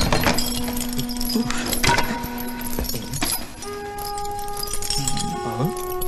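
Film soundtrack: long held tones under a run of sharp metallic clinks and rattles. The loudest clinks come near the start, about two seconds in and just after three seconds.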